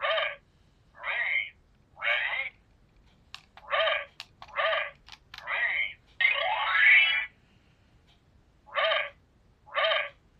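Handheld electronic memory-game cube playing a series of short electronic sounds through its small, thin-sounding speaker, about one a second, as a sequence is played back and repeated, with a longer sliding sound about six seconds in. Light clicks of its buttons being pressed come between about three and five and a half seconds.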